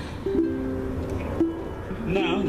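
Ukulele strumming chords, the notes ringing steady, with a change of chord a little past a second in.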